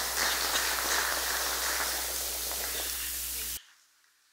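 Steady hiss with a low electrical hum from an open microphone or audio feed, with a cough just at the start. It cuts off suddenly to silence about three and a half seconds in.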